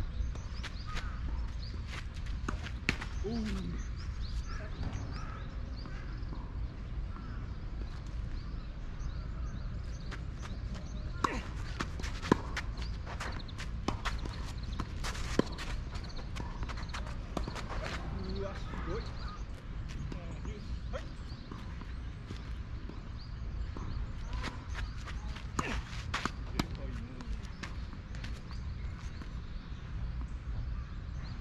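Tennis rally on a clay court: rackets striking the ball and the ball bouncing, heard as scattered sharp knocks, most of them in the middle and near the end, over steady low background noise.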